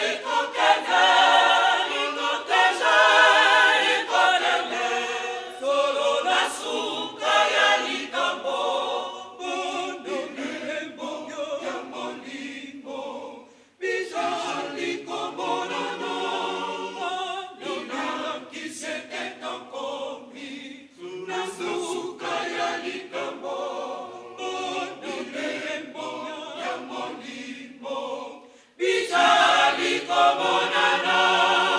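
Mixed choir of women and men singing unaccompanied, loudest over the first few seconds and then softer. The singing breaks off briefly about halfway through and again just before the end, then resumes.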